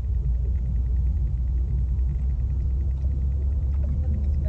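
Steady low rumble of a car's engine and road noise as picked up inside the cabin by a dash camera, while the car drives onto a roundabout.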